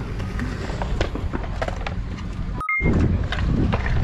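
Skateboard wheels rolling on concrete, with a few sharp clacks. About two and a half seconds in the sound cuts off suddenly, two brief beeps follow, and then a louder low rumble takes over.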